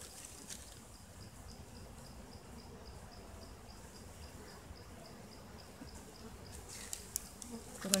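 Faint insect sounds, a high chirp repeating evenly about four times a second over a soft steady hum, around an opened honey bee hive. A few sharp handling clicks come near the end.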